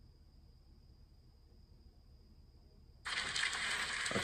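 Near silence with a faint steady high-pitched tone for about three seconds, then loud audio from an autoplaying video cuts in suddenly near the end.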